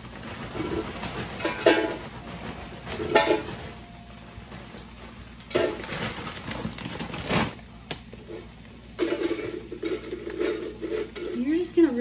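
Plastic chip bag crinkling in several sharp bursts as it is opened and handled. Tortilla chips are shaken out into a large empty metal can.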